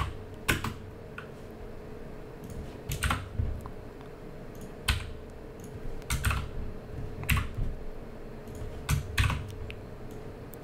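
Computer keyboard typing: scattered single keystrokes every second or two, over a faint steady hum.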